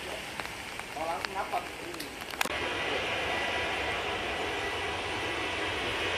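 Steady jet engine noise of a Boeing 737-800 at takeoff power as it rolls down a wet runway, with the hiss of spray. It begins suddenly about two and a half seconds in; before that, faint voices sound over a distant departing airliner.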